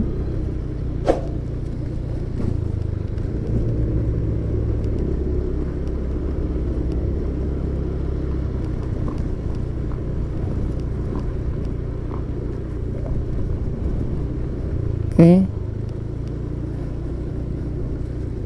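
Motorcycle engine running steadily at low speed, slightly louder for a couple of seconds early in the ride.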